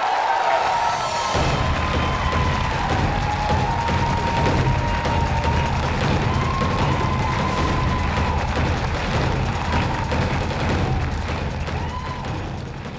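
Audience cheering and applauding, with music with a strong bass starting about a second in and playing under the applause.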